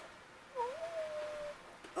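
A cat meowing once, faintly and drawn out, for about a second: a short dip in pitch, then a held note.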